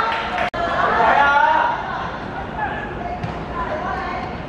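Several voices shouting and talking over one another, loudest in the first couple of seconds, with a momentary dropout in the audio about half a second in.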